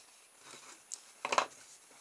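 Cardboard tubes handled on a wooden desk: a faint tick, then one short knock about a second and a half in as a tube is set down on the wood.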